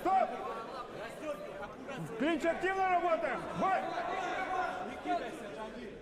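A referee shouting at two bare-knuckle fighters locked in a clinch, with crowd chatter and other shouts behind.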